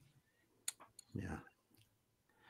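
Near silence in a pause of a video-call conversation, broken by a sharp click about two-thirds of a second in and a brief soft vocal sound a little after one second.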